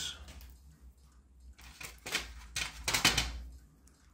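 Clicks and scrapes of small plastic and magnet parts being handled and pried at by hand on a toy boat's motor shaft. They come as a cluster in the second half.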